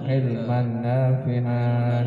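A man chanting an Arabic prayer in a slow melodic recitation, holding long steady notes with a few gentle rises and falls in pitch.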